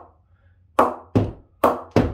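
Cricket ball bouncing repeatedly off the face of an unoiled English willow cricket bat (DSC Xlite 3.0), one sharp knock about every half second from about three quarters of a second in. It is being done to show the bat's ping, which is pretty good and very responsive.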